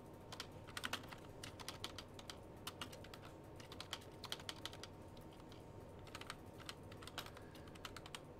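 Typing on a computer keyboard: faint, irregular key clicks, some in quick little clusters.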